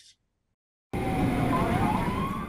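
Near silence for almost the first second, then a fire truck on the move cuts in suddenly: steady engine and road noise with a faint tone that dips and then rises in pitch.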